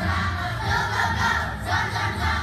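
A large choir of young children singing loudly together, over a steady low musical accompaniment.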